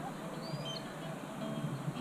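Quiet outdoor background with a few faint, short bird chirps about half a second in.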